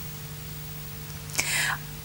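A low, steady electrical hum under quiet background noise, with one short breathy rush, like a breath or a whisper, about one and a half seconds in.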